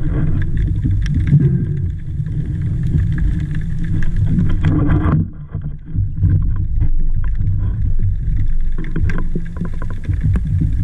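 Muffled underwater noise on a diving camera: a dense low rumble with many short knocks, its higher hiss dropping away about five seconds in.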